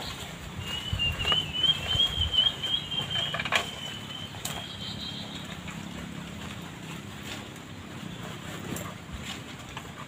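A thin, wavering high-pitched call holds for about four and a half seconds, over a few light clicks and knocks as an aluminium pole is handled.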